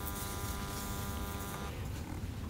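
A steady electrical buzz with many even overtones under the room tone, fading out near the end.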